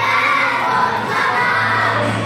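A group of young children singing together loudly, close to shouting, with music playing behind them.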